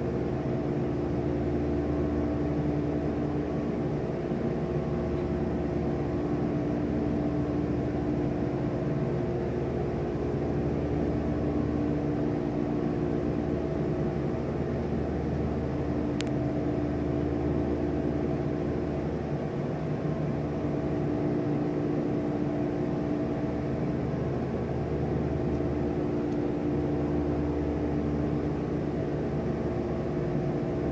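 Steady mechanical hum with several held tones over a low drone, unchanging throughout, with one sharp click about halfway through.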